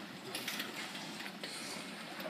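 Concert-hall room noise with no music playing: a diffuse audience hush with a few brief rustles, about half a second in and again near the middle.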